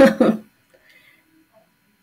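A woman's drawn-out "uy" exclamation with a rising then falling pitch, trailing off in a few short voiced sounds within the first half-second, then near silence.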